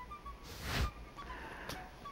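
A whoosh transition sound effect about half a second in, with faint scattered musical notes and a short click near the end.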